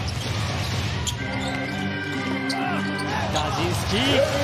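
Basketball dribbled on a hardwood court, with short sneaker squeaks near the end, over steady arena music and crowd noise.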